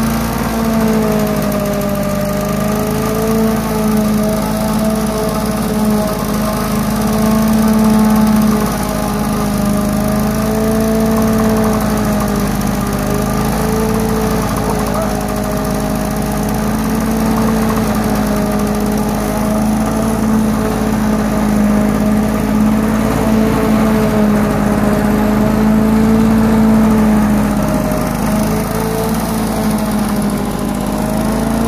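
Victa petrol rotary lawn mower engine running steadily throughout, its pitch wavering slightly up and down as it is pushed over the grass.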